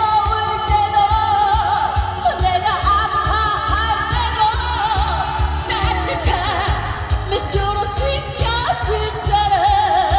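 A woman singing a Korean pop-style song into a handheld microphone over a backing track with a steady beat, amplified through a PA system, her voice wavering with vibrato on held notes.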